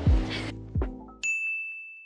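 The last notes of background music fade out, then a single bright ding chime sound effect comes in a little over a second in and rings on as one steady high tone.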